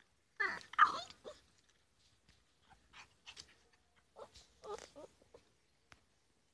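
Podenco puppy yelping and whining. The loudest is a burst of high, pitch-bending yelps about half a second in, followed by several shorter, quieter whimpers over the next few seconds.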